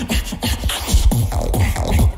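Live competitive beatboxing: one beatboxer performing a dense, bass-heavy beat of deep bass hits, many dropping in pitch, over sharp snare- and hi-hat-like mouth clicks.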